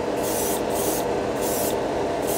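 Gravity-feed airbrush spraying thinned metallic lacquer in short repeated bursts of hiss as the trigger is worked, about three in two seconds. Underneath runs the steady hum of a spray booth's exhaust fan.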